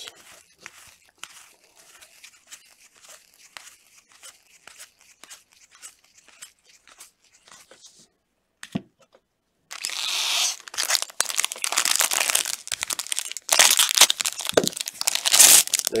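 Soft ticks and slides of baseball cards being flipped through a stack, then, about ten seconds in, a foil trading-card pack wrapper being torn open and crinkled loudly until the end.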